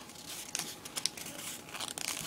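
Origami paper being folded by hand, crinkling with a few small crisp crackles.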